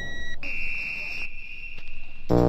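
Breakdown in a 1991 techno track, with the beat dropped out. A few short high synth beeps give way, about half a second in, to one high, alarm-like held tone that steps slightly down in pitch about a second later.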